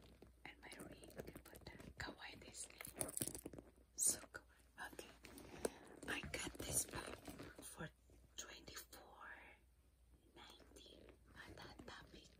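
A faux-leather Loungefly crossbody bag being handled and turned close to the microphone. Soft, irregular rubbing and rustling is broken by many brief light clicks, the loudest about four seconds in, with whispering under it.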